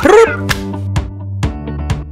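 Background music with plucked guitar-like notes over a steady bass, with a short, sharply gliding voice exclamation at the very start.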